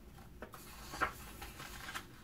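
A picture book's page being turned by hand: a soft paper rustle with two light taps, the louder one about a second in.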